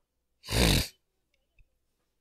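A single short, forceful breath noise from a person, like a snort, about half a second in and lasting about half a second.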